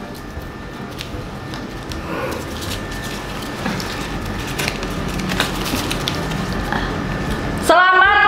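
A folded paper slip being unfolded by hand, with crinkling and rustling, over faint background music. A loud voice breaks in near the end.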